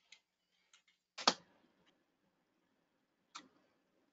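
Computer keyboard keystrokes, heard as separate clicks: a few soft taps, one much louder clack a little over a second in, and another click near the end.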